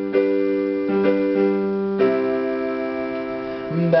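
Portable electronic keyboard on a piano sound playing a slow succession of chords, the last, struck about two seconds in, left to ring and fade. A man's singing voice comes back in right at the end.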